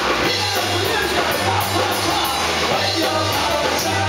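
Live rock music: a rock song played through the PA, with a repeating low bass line under guitar and drums.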